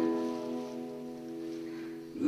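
Acoustic guitar chord struck once and left to ring out, fading gradually over about two seconds.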